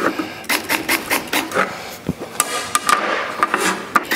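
Milwaukee cordless drill spinning a small bit into the board to make a pilot hole, a steady motor whine for about a second and a half starting a little past halfway, amid clicks and knocks of the drill and tools being handled on the bench.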